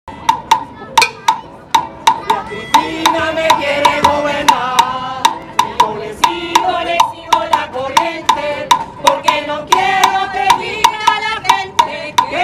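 Afro-Cuban style percussion ensemble of surdo-type bass drums and djembes playing a groove over a steady wood-block click about four times a second. Voices join in from about three seconds in.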